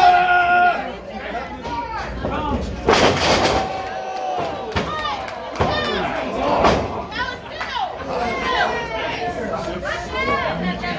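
Wrestlers' bodies hitting a wrestling ring's canvas with a heavy thud about three seconds in, amid voices shouting from the crowd and ringside.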